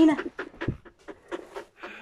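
A dog panting in quick, irregular breaths close to the microphone.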